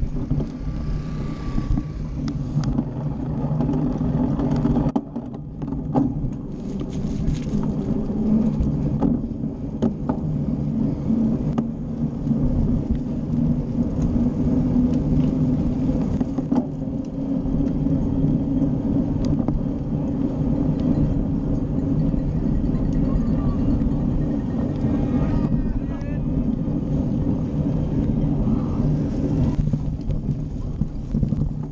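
Wind buffeting a bike-mounted action camera's microphone, with tyre rumble as a cyclocross bike is ridden fast over a dirt course. Scattered knocks and rattles come from the bike over bumps.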